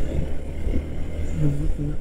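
Motorcycle riding along a rough country road: a steady low rumble of engine and wind. A man's voice starts near the end.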